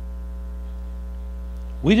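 Steady electrical mains hum with a ladder of overtones, unchanging in pitch and level. A man's voice starts a word near the end.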